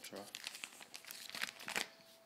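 Plastic pocket pages of a trading-card binder crinkling as a hand turns a page: a quick run of rustles and crackles, loudest near the end.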